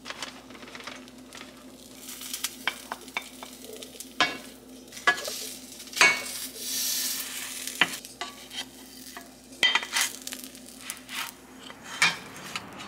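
A cheese-filled tortilla frying in a nonstick pan, sizzling, while a wooden spatula knocks and scrapes against the pan as the tortilla is folded over and pressed down. The knocks come irregularly, the sharpest about four, five, six and ten seconds in, with a longer stretch of sizzling hiss around six to seven seconds.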